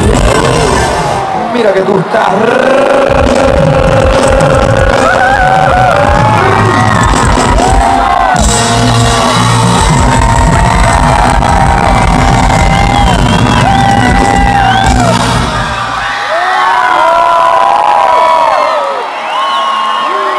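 Live pop/hip-hop concert music played loud over a PA, recorded from within the audience: a vocal line over a heavy bass beat. The beat drops out about four seconds before the end, leaving the voice and the crowd cheering.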